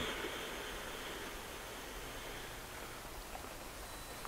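Quiet room tone: a faint, steady hiss, with a soft higher hiss that fades out over about the first second.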